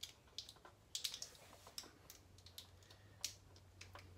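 Split plastic wire loom being worked over a bundle of wires by hand: faint, irregular small clicks and crackles of the plastic tubing, with sharper clicks about a second in and near the end.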